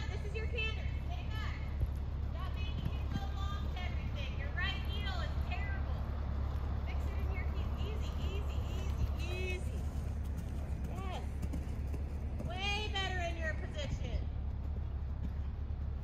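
Indistinct voices in short snatches, too faint to make out, over a steady low rumble.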